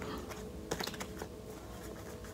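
A few faint, light clicks and taps, irregularly spaced and bunched in the first half, over a faint steady tone.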